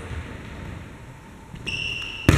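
Echoing gym room sound, then near the end a short, steady, high-pitched squeak of a sneaker on the hardwood court as a volleyball player plants her feet for a jump.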